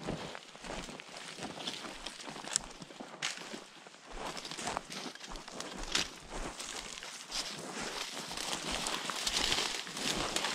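Footsteps on dry twigs and pine litter, with irregular snaps and crackles of sticks underfoot and pine branches brushing against clothing as people push through dense scrub.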